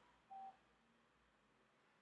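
Near silence with a single short electronic beep about a third of a second in.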